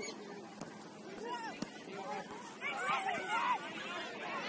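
Indistinct voices calling out across a soccer field, several at once, louder from about two and a half seconds in, with one sharp click about a second and a half in.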